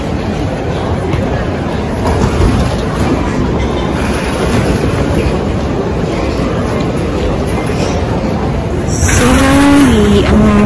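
Baby stroller rolling across an airport terminal floor: a steady rumble from the wheels and frame. A brief voice is heard near the end.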